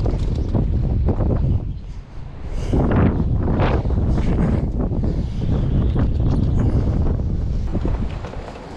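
Wind buffeting the microphone, a heavy gusty rumble that eases briefly about two seconds in and then picks up again.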